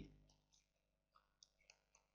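Near silence, with a few faint ticks of a stylus writing on a tablet, about a second in and after.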